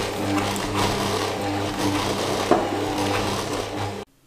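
Electric stand mixer running steadily, its motor giving a low hum while the hook works flour and water into a stiff dough in the stainless steel bowl. A few knocks come from the dough hitting the bowl.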